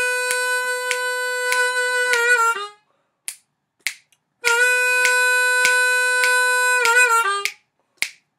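A-key diatonic harmonica playing two blues phrases: each is a long, steady four-draw note, then quick bends that step down to the three draw, and the second phrase starts about four and a half seconds in. Short clicks sound through the playing.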